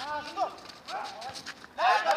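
Men shouting short, high rising-and-falling calls to each other while playing football; the calls grow louder and overlap near the end.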